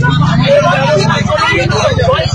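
Mostly speech: a woman speaking while a crowd of villagers talk over one another, with a steady low rumble underneath.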